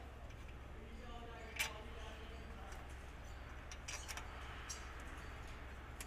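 Loose metal bolts and fittings clinking in the hand during hand work on an air compressor head: a sharp click about a second and a half in, and a couple of lighter clicks around four seconds.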